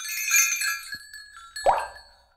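Animated-logo sound effect: a cluster of bright, glassy chime tones struck together, ringing and slowly fading. About three-quarters of the way through comes a short whoosh.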